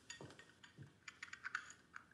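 Soft footsteps, then from about halfway in a quick run of clicks of typing on a laptop keyboard.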